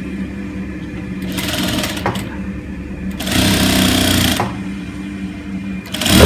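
Electric sewing machine stitching in two short runs, one about a second and a half in and a louder one just past the middle, with a steady hum between them.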